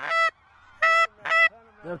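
Geese honking overhead in flight: three short, high, evenly pitched honks about half a second apart.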